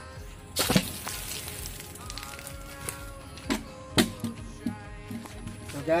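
A water bottle rocket, a plastic bottle a quarter full of water and pumped full of air with a bicycle pump, bursting off its nozzle: one short rush of spraying water and escaping air about half a second in. A couple of sharp knocks follow later, over steady background music.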